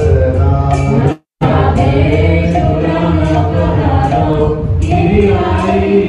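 Group kirtan singing, a choir of voices chanting a devotional melody over steady accompaniment with a regular high-pitched beat. The sound cuts out completely for a moment about a second in.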